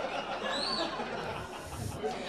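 Low murmur of a small club audience and room noise during a pause in the talk. About half a second in there is a brief, faint high tone that rises and falls.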